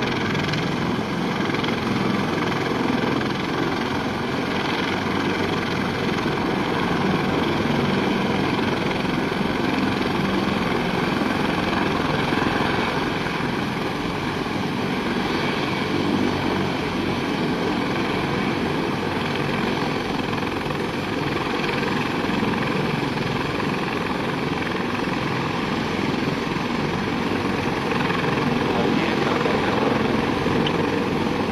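MH-53E Sea Dragon helicopter taxiing with its main rotor turning: a loud, steady mix of rotor noise and turbine whine from its turboshaft engines, with another helicopter's rotors turning close by.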